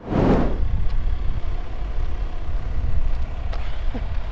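Uneven low rumble of outdoor background noise, with a rustling swell at the start and a couple of faint clicks near the end.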